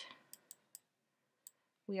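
Four faint, sharp computer mouse clicks spread over about a second and a half, made while dragging and resizing an image in a photo editor.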